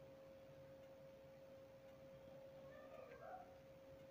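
Near silence: a faint steady hum, with a faint short wavering call about three seconds in.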